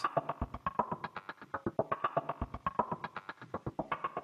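Sempler, a Max for Live sampler-sequencer, playing a rapid, even 16-step pattern of short sample slices cut from a collage of random sounds, heard as stuttering, glitchy hits. The slice start point of each step has been randomized, so every hit jumps to a different part of the sample.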